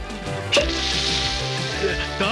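Cartoon sound effect of a plug popping out of a boat's deck, a sharp pop about half a second in, then a steady hissing spray of water gushing up through the hole, over background music.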